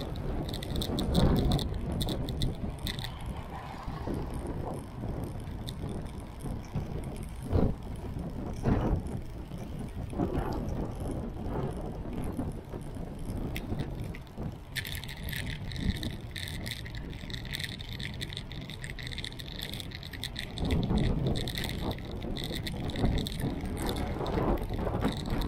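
Riding a bicycle through city traffic, heard from a camera on a moving bike: a steady low rush of wind and road noise. A fine rapid rattling comes in during the first few seconds and again through the second half.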